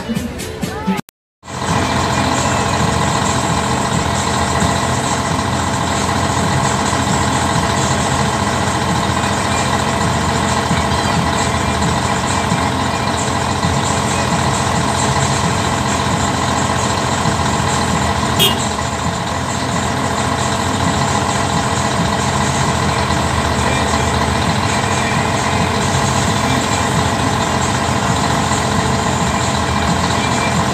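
Scania truck's diesel engine running steadily at idle, starting after a brief cut about a second in, with a single short click about eighteen seconds in.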